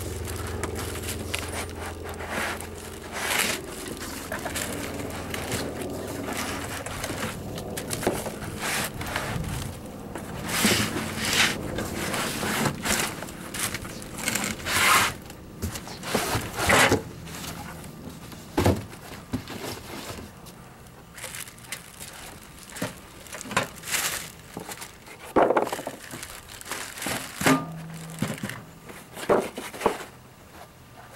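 Plastic wrapping crinkling and cardboard packaging scraping and rustling as a heavy boxed stove is unpacked, with irregular handling knocks. A steady low hum sits under it for the first few seconds.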